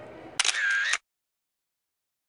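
Photo booth camera shutter firing: a sharp click about half a second in with a brief high tone behind it, cut off abruptly after about half a second.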